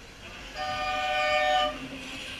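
A horn sounds one steady blast of a bit over a second, several flat tones together, starting about half a second in.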